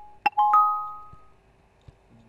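Windows 10 speaker test sound playing through the speakers: a chime struck twice in quick succession about a quarter second in, each strike ringing on a few steady tones and fading away within about a second. The tail of the previous chime fades out at the start.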